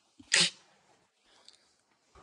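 A single short, sharp burst of breath and voice from a person, about a third of a second in.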